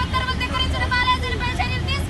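One protester's high voice calling out a long, drawn-out slogan on its own between crowd chants, over a steady low rumble.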